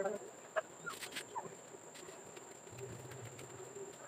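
Faint clicks and rustling as packaged goods are hung on metal hooks on a store shelf, with a few short high chirps in the first second and a half. A low hum comes in near the end.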